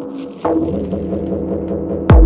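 Techno track in a breakdown with the kick drum gone: a short hissing sweep falls away in the first half-second, then held synth chords with a slowly pulsing low synth line.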